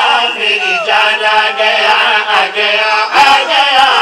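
A man chanting a devotional Urdu qasida in a drawn-out melodic line, loud and amplified through a PA system.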